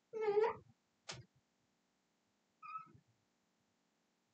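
Felt-tip marker squeaking on a glass lightboard while curves are drawn: a wavering squeal at the start, a short sharp squeak about a second in, and a brief higher squeak near the end.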